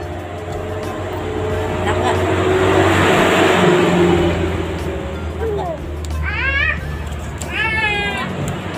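A baby fussing and crying out at the taste of mango: a breathy rush of crying in the middle, then two short high wails that rise and fall near the end.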